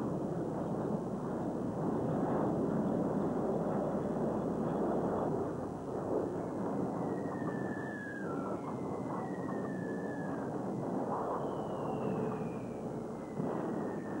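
A steady, rough rumbling noise, with several short falling whistles over it in the second half.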